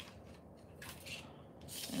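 Faint rubbing and scraping of fingers, round pliers and thin 18-gauge wire against a paper template while the wire is bent into shape, with a few brief scratchy rustles about a second in and near the end.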